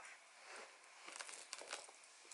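Faint rustling and light scraping of a quilted caviar-leather flap bag being handled as its flap is lifted and something is drawn out of it.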